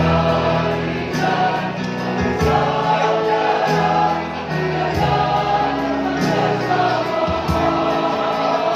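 Mixed SATB choir singing sustained chords, the harmony moving on about every second.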